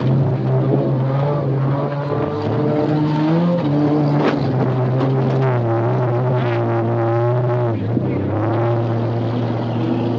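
Beater car's engine heard from inside the cabin while racing on a dirt track, running hard with its pitch rising and falling as the throttle changes, with a brief dip near the end.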